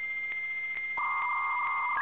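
Dial-up modem handshake: a steady high answer tone with faint regular clicks, joined about a second in by a lower buzzing tone, with the thin sound of a telephone line.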